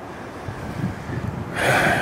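Low, uneven wind rumble on the microphone, then a sharp intake of breath near the end.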